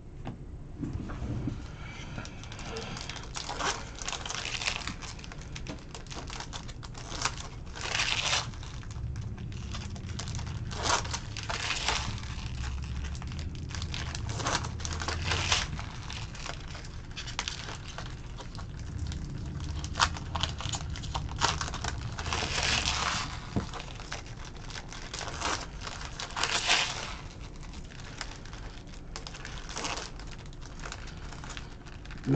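Trading-card packs and their wrappers being handled and torn open, with cards being shuffled and sorted: a string of short crinkling, rustling and tearing sounds, some lasting about half a second, scattered through the whole stretch.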